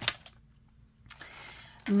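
Craft supplies being handled on a table: one sharp click right at the start, then a faint rustle of plastic bags about a second in as hands reach for glass jars of paper flowers.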